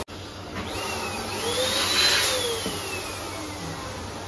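Electric balloon pump running with a steady rush of air, its motor whine rising in pitch and then slowly falling away.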